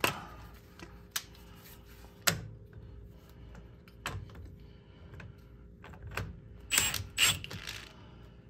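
Sparse metallic clicks and taps from a socket wrench and extension working the nut of a makeshift ball-joint puller on a Polaris Ranger 570's steering knuckle, with a louder cluster of clicks near the end.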